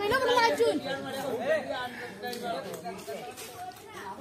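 Several voices chattering and talking over one another, loudest in the first second.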